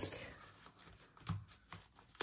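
Loose coins being dropped into a small pot of change: one sharp clink at the start, then a few faint clicks of coins being handled.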